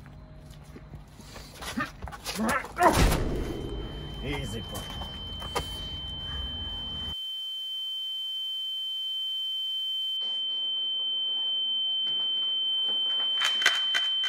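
Scuffling with a couple of heavy thuds about two to three seconds in, then a steady high-pitched ringing tone that runs on alone and grows slowly louder: a film ear-ringing effect for someone knocked senseless.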